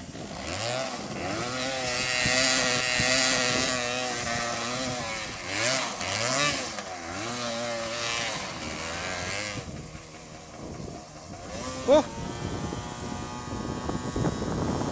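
Yamaha DT 200 two-stroke single-cylinder motorcycle engine revving up and down with a buzzing note, falling away about ten seconds in. A short cry of 'ouch' follows near the end.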